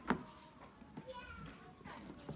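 Children's voices chattering in the background, with one sharp knock of tableware on the wooden table just after the start.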